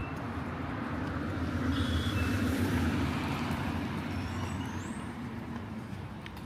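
A car driving past on the street, its engine and tyre noise swelling to a peak about two to three seconds in, then fading away.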